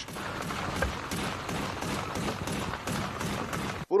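Steady hissing field noise with faint, irregular crackles throughout, cutting off abruptly near the end.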